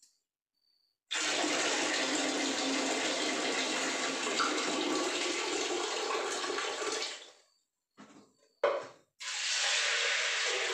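Water running from a tap into a steel pressure cooker pot as it is rinsed at a washbasin, starting about a second in and stopping about seven seconds in. A few short metal knocks follow, then water is poured from a steel jug into the cooker near the end.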